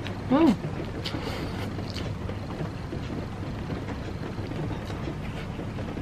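A brief hummed "hmm" of enjoyment, then soft mouth sounds of eating fried instant noodles with egg: a few faint slurps and chewing clicks in the first couple of seconds, over a steady background hiss.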